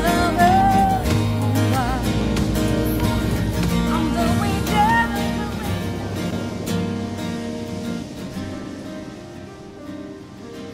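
The closing bars of a pop ballad played by a band with electric guitar and keyboard, with a woman's voice holding wavering, wordless sung notes over it in the first half. The music then fades away gradually over the last few seconds as the song ends.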